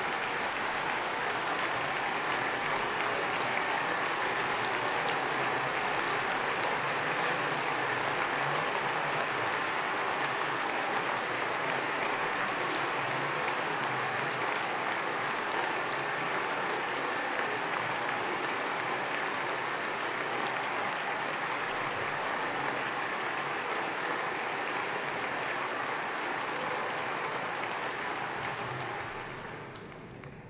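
Long, steady applause from a large assembly of parliamentarians, dense and unbroken, dying away over the last couple of seconds.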